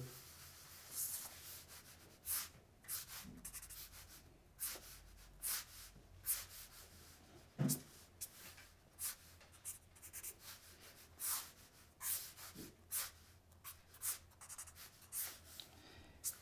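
Pen strokes on a paper drawing pad: a string of short, quiet, scratchy strokes at an uneven pace, one or two a second, as a car is sketched line by line.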